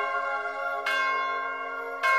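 Church bell struck about once a second, each stroke ringing on into the next; one stroke falls about a second in and another right at the end.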